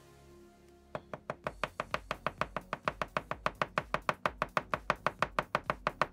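Paint pot being shaken by hand, its mixing ball rattling inside in a fast, even click about six times a second, starting about a second in.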